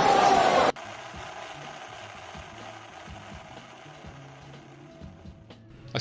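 Audience laughing and applauding, cut off abruptly under a second in. Quiet background music follows and sinks lower towards the end.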